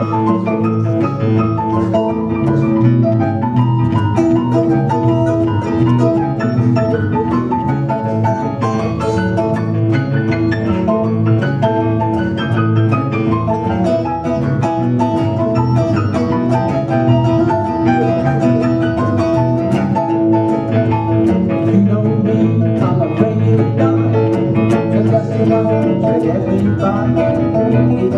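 A live band playing the instrumental introduction to a blues song on stage keyboard and acoustic strings, with a steady beat. The vocal comes in right at the end.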